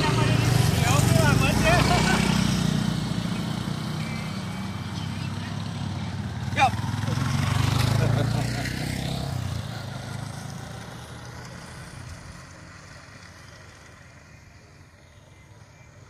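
Motorcycle engine running at low speed under people's voices, fading away over the last several seconds; a short sharp squeak about six and a half seconds in.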